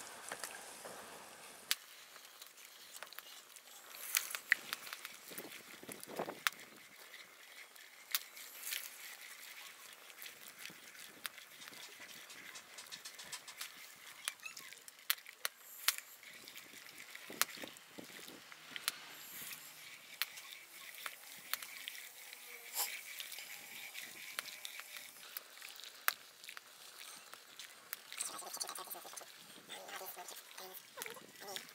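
Wooden spoon stirring in a stainless steel saucepan of hot sodium hydroxide solution, with scattered sharp clicks and knocks of the spoon against the pan over a faint hiss.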